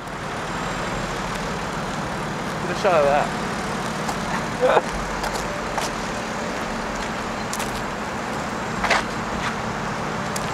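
Steady road traffic noise from cars passing on a city street, with short snatches of voices about three and five seconds in.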